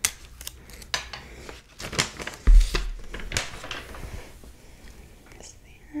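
Close-miked handling of a sheet of printed photo paper: rustling and crackling with several sharp clicks as it is picked up. A single heavy low thump about two and a half seconds in is the loudest sound.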